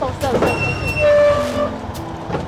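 Auto-rickshaw horn honking: a steady held tone of about a second, loudest near the middle, with a short burst of a voice just before it.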